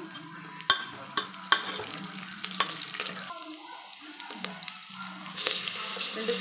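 Sliced onions, whole spices and fresh curry leaves sizzling in hot oil in a steel pot, while a spoon stirs and clinks sharply against the pot a few times in the first half. A low steady hum runs underneath.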